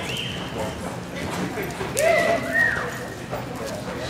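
Spectators cheering and whistling, loudest about two seconds in, over a horse's hoofbeats on the arena dirt.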